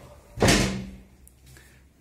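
A door slamming shut once, about half a second in, with a short ringing decay.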